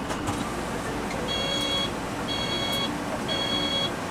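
Electronic alert tone beeping about once a second, three half-second beeps starting about a second in, over a steady machinery hum.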